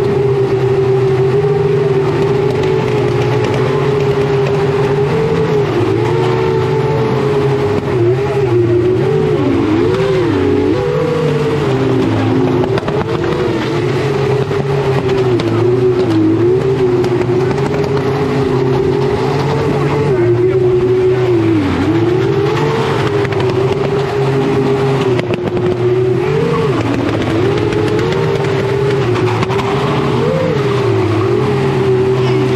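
Toyota Altezza's swapped-in V8 engine held high in the revs while drifting, its pitch repeatedly dipping briefly and climbing back as the throttle is worked.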